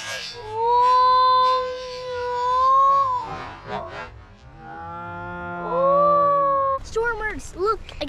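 Two long drawn-out calls by voices, each held steady for about two seconds, followed near the end by a run of quick, excited exclamations that rise and fall in pitch.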